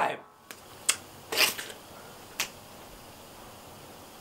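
A few short, sharp clicks about a second apart, with a brief rustle between them, over faint room noise.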